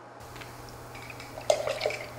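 Water sounds: a steady hiss of moving water begins just after the start, with a louder rush of water about one and a half seconds in.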